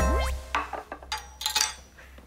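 Playful comedy sound-effect cue: a quick rising pitched glide, followed by a few short bright chiming plinks that ring briefly.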